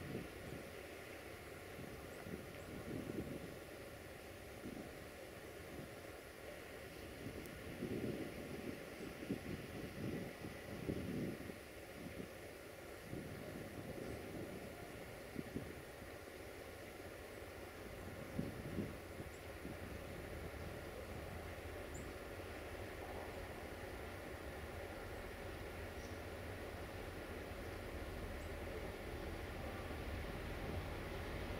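Faint, steady low rumble of an Electroputere 060-DA (LDE2100) diesel-electric locomotive running at the head of its passenger train, with uneven swells of noise over it.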